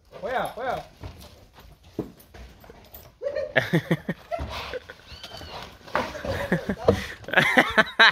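Men's voices calling and shouting to drive a Nelore heifer around a corral, in short loud bursts that grow busier from about three seconds in.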